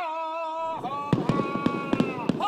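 A single sung voice holding a long note, with a rapid, irregular string of firecracker cracks breaking in about three-quarters of a second in and continuing under it.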